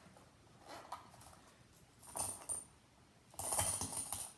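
Coins clinking in a small silicone squeeze coin pouch as it is handled, in three short bursts, the last the loudest.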